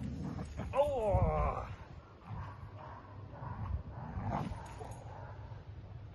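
Dog whining during a tug game: one loud whine falling in pitch about a second in, followed by quieter scuffling and vocal noises.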